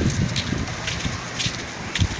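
Wind buffeting the microphone, an uneven low rumble broken by short crackles.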